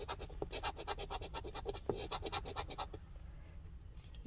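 A coin scraping the coating off a scratch-off lottery ticket in rapid back-and-forth strokes, about eight a second, stopping about three seconds in.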